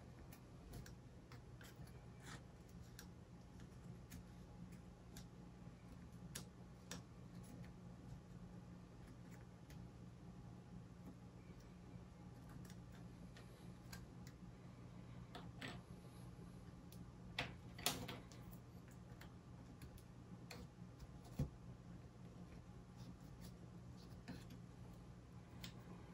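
Near silence with scattered faint clicks and taps of small plywood model parts being handled and pressed into place, a few louder clicks in the second half, over a steady low hum.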